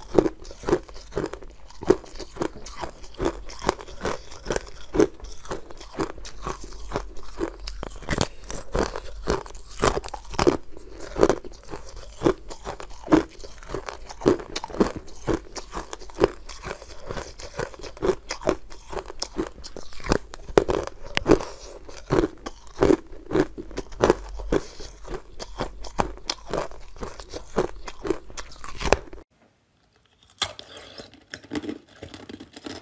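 Close-miked biting and chewing of hard ice: sharp, irregular crunches about twice a second, with crackling between bites, breaking off shortly before the end.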